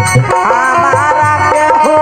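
Live Bhojpuri folk-theatre music: an electronic keyboard melody, with lines that slide in pitch, over a regular hand-drum rhythm.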